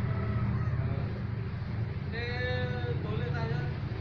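A steady low hum, with faint voice-like sounds and one drawn-out, high-pitched call about two seconds in.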